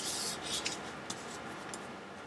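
Clear plastic packaging of bagged diamond-painting drills crinkling as it is handled, mostly in the first second, then a few faint crackles.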